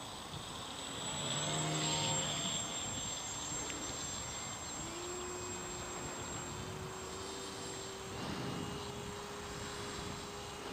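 Small motor and propeller of a radio-controlled foam flying wing running in flight: a thin whine whose pitch rises about halfway through and then holds steady. A rush of hiss swells briefly near the start.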